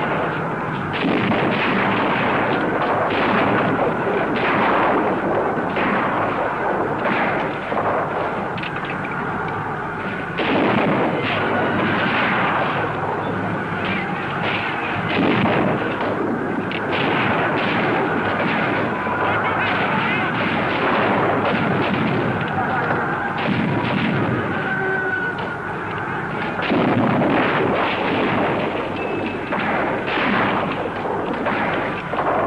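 Film battle soundtrack: rifles firing almost without pause, many shots overlapping, with shouting voices mixed in.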